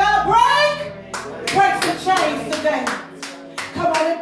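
A woman's voice through a microphone holds a long, wavering note, then from about a second in, hands clap several times a second in an uneven run, with voices between the claps.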